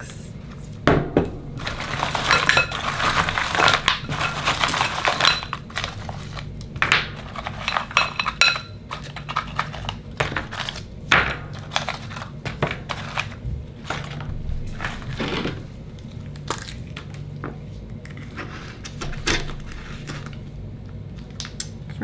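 Akoya oyster shells clattering against one another and against a glass bowl as they are rummaged through and picked out: a dense rattling for a few seconds near the start, then separate sharp clicks and knocks of shell as oysters are handled.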